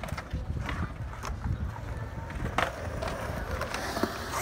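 Skateboard wheels rolling on concrete with a low rumble, broken by several sharp clacks of boards striking the concrete, the loudest about two and a half seconds in.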